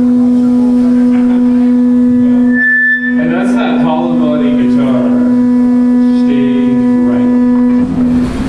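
A single steady musical note held for about eight seconds, dropping out briefly about three seconds in and stopping just before the end, with a voice over it in the middle as the band starts a blues number.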